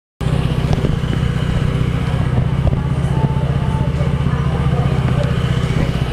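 A small motor vehicle engine, likely a scooter or motorcycle, running steadily close by: a low drone with a fast, even pulse.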